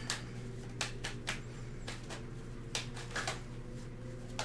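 A deck of tarot cards being shuffled by hand: several short, separate snaps and taps of the cards at irregular moments, over a faint steady hum.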